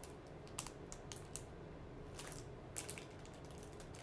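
Faint, irregular clicks and taps of small objects being handled close to the microphone.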